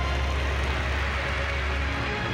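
Racing car engine passing, its noise swelling about midway through, over a low steady hum.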